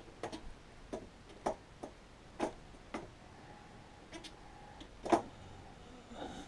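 Scattered light clicks and knocks, about eight at uneven spacing, the loudest about five seconds in, from handling or moving about between jobs.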